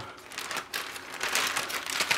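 Clear plastic bag crinkling as the bagged intercom station inside it is handled: an irregular run of soft crackles.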